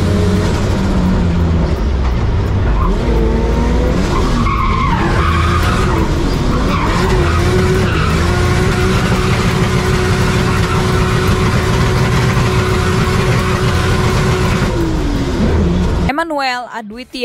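Drift car's engine revving hard, its pitch rising and falling several times as the car slides through a corner, with tyres squealing. It then holds steady at high revs and drops off near the end.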